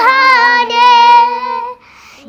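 A young girl singing a hymn to Mary unaccompanied, holding one long note that dips in pitch at the start, then stays level and stops near the end.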